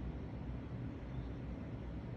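Steady low background hum with no distinct sounds.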